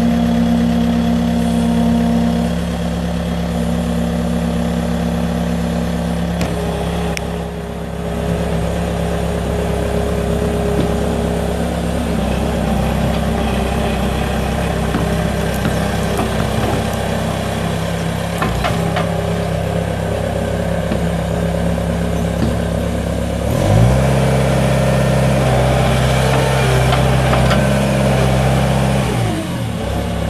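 2006 Bobcat T300 tracked skid steer's Kubota four-cylinder diesel engine running while the machine is worked. Its arms come down and it drives on its tracks. About three-quarters of the way through the engine speeds up, holds the higher speed for several seconds, then drops back just before the end.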